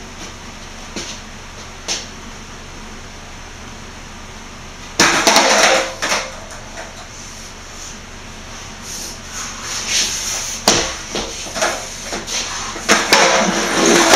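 Skateboard on a bare concrete floor: wheels rolling with a loud rush about a third of the way in and again near the end, and the board clattering and slapping down, including one sharp crack in between.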